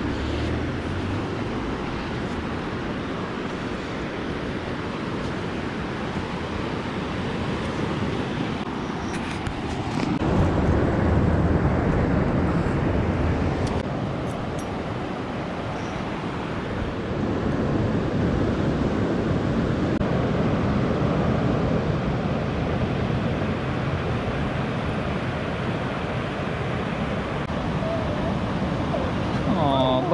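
Ocean surf washing onto a sandy beach: a steady rushing noise that swells louder twice, about a third of the way in and again past the middle.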